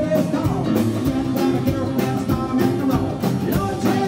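Live rock and roll band playing a boogie: upright double bass, drum kit, electric keyboard and acoustic guitar over a steady driving beat.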